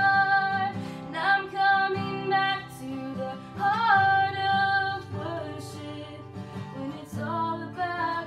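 A woman singing a worship song, accompanying herself on a strummed acoustic guitar. She holds a long note at the start, then sings shorter phrases with small bends in pitch over the guitar chords.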